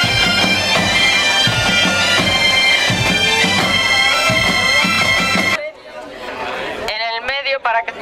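Bagpipe music, a steady drone under a moving melody, that cuts off suddenly a little past halfway through; a voice starts speaking near the end.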